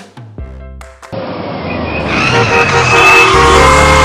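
A commercial's music with short drum hits breaks off about a second in. A loud, rising rush of car and road noise then comes in under music, with a high tyre squeal, as a car skids toward a collision.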